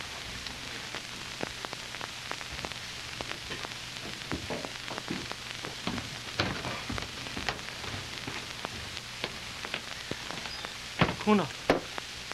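Steady hiss and crackle of an old kinescope film soundtrack, with scattered faint clicks and knocks, and a brief snatch of a voice near the end.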